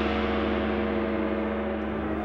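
Film score music: a gong stroke ringing on and slowly fading, over a low sustained orchestral tone.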